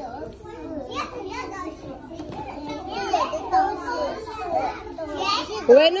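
Children's voices talking and chattering over one another.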